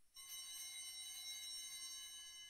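Altar bells rung at the elevation of the chalice, marking the consecration of the wine: a cluster of bright, high metallic tones that starts suddenly and shimmers, then rings on steadily.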